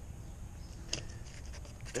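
A knife being worked behind a bone at the head of a fluke: quiet handling with one sharp click about a second in, over a low steady background rumble.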